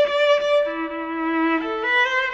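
Unaccompanied cello played with the bow. A long high note gives way to a lower note held for about a second, then the line steps quickly upward near the end.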